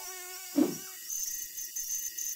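Soft high-pitched electronic chirps in short repeated bursts, starting about a second in, with a brief low whoosh about half a second in.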